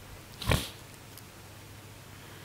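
A person's single short breath close to a headset microphone, about half a second in, over faint background hum.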